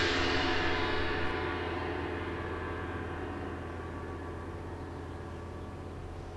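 A gong-like hit in the background score, struck just before, rings on and slowly fades, with many ringing overtones dying away.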